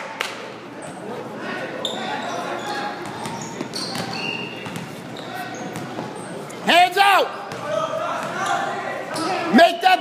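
Basketball bouncing on a hardwood gym floor amid players' footsteps and scattered voices, all echoing in a large hall; a loud shout rings out about seven seconds in and again near the end.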